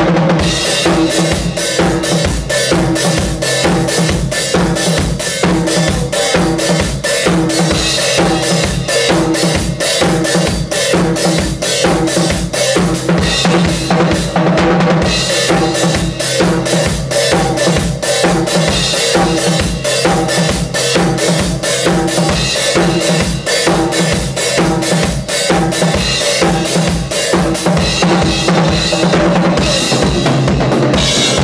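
Acoustic drum kit played live: a fast, driving beat of bass drum and snare with cymbals, with a short drop in the cymbals about halfway through.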